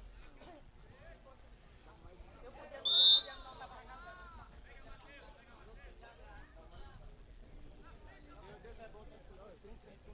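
Referee's whistle: one short, loud blast about three seconds in, stopping play for a foul. Faint voices of players and spectators in the background.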